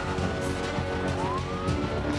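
Crime-show theme music with a siren sound mixed in: one siren tone holds high, then a new one rises in pitch about a second in.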